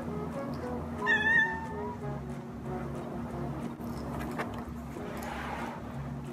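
A cat meowing once, a short wavering meow about a second in, over steady background music.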